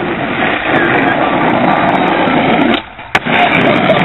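Skateboard wheels rolling loudly over rough asphalt as the skater comes in fast for an ollie. The rolling noise drops away briefly about three seconds in while the board is in the air, then a single sharp clack as it lands, and the rolling picks up again.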